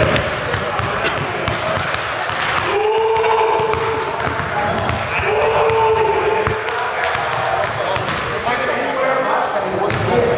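A basketball bouncing on a hardwood gym floor as a player dribbles at the free-throw line, with people's voices in the gym.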